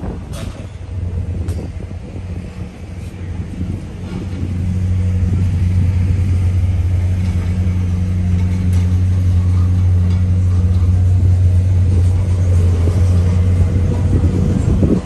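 Engine of a compact construction loader running close by: a steady low hum that grows louder about four to five seconds in as the machine comes nearer.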